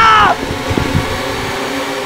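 A high-pitched scream that breaks off just after the start, then a steady rushing wind sound effect for a whirlwind of flying debris.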